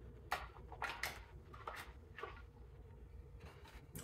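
Faint, scattered rustles and light taps of hands handling cardboard packaging and a wired earbud cable: about half a dozen short sounds.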